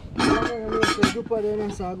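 Aluminium pot lid being lifted off a cooking pot, clattering against the rim twice with a short metallic ring about a second in.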